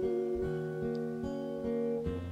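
Music: an acoustic guitar plays a slow accompaniment of single plucked notes, about two to three a second, in a gap between sung lines.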